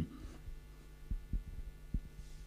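Handling noise from a handheld microphone being carried: three soft, low thumps over a steady low hum.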